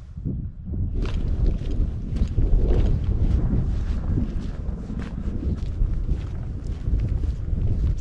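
Wind buffeting the microphone in a steady low rumble that grows louder about a second in, with faint footsteps on a dirt track.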